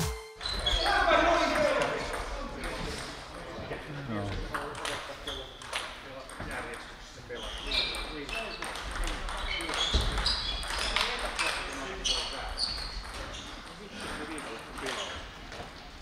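Table tennis balls clicking off bats and tables in a sports hall, in quick irregular ticks from rallies on several tables, over a murmur of voices in the hall.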